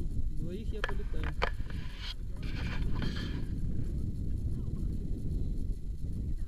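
Wind buffeting the camera microphone, a steady low rumble, with two sharp clicks about a second in and a burst of hissy rustling a little later.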